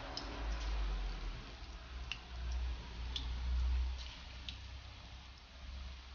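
Batter-coated curry leaves deep-frying in hot oil in a kadhai: a steady sizzle with scattered sharp pops, over a low rumble, easing off in the second half.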